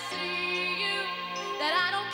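A woman singing a song with instrumental accompaniment; she holds a note, then starts a new phrase near the end.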